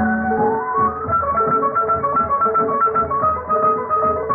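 Instrumental passage of a 1950s Hindi film song: bowed strings carry a stepping melody of held notes over plucked-string and rhythmic accompaniment. The sound is dull and narrow, typical of an old film-song recording.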